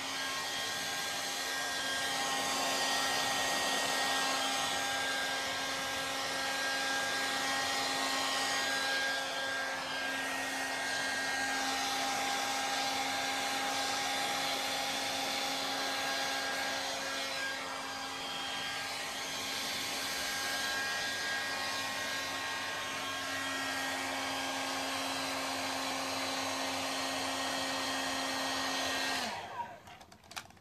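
Handheld hair dryer blowing steadily while drying long hair, a constant rushing noise with a motor hum. Near the end it is switched off and the hum winds down.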